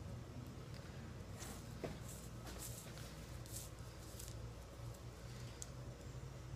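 Faint rustling and scratching of a paracord bowstring being handled and threaded around a pulley by hand, with a handful of short scratchy sounds in the middle, over a low steady hum.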